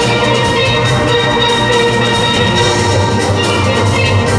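A steel band playing: many steel pans ringing out together, with a steady beat underneath.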